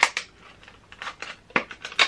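Hard plastic packaging around a makeup brush being prised and pulled open: a series of short, sharp plastic clicks and crackles, coming closer together in the second half.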